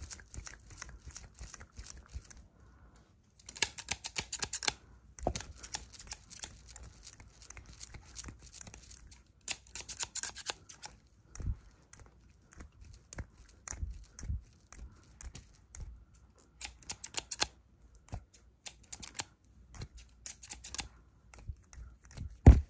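Scissors snipping close to the microphone in several short bursts of crisp clicks.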